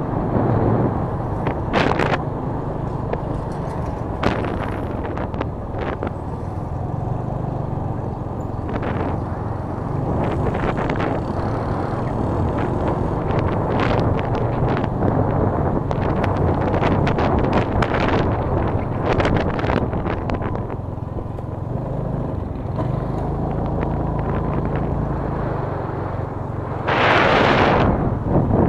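Motorcycle riding along a road: a steady low engine hum under wind rushing and buffeting on the microphone. A louder gust of wind noise comes near the end.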